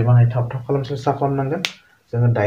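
A man speaking in a low voice, with one sharp click about one and a half seconds in.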